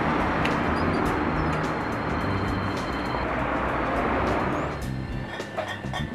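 Background music over a steady rushing noise of road traffic, such as a passing vehicle, which fades out near the end.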